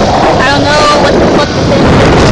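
Loud wind and road noise rushing over a phone microphone from a moving vehicle, with a few brief voice-like sounds about half a second in.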